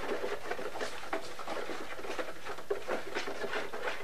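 Stirring and working a gritty slurry of indigo compost, wood ash and lime in hot water inside a plastic jug: a continuous, irregular scratching and swishing.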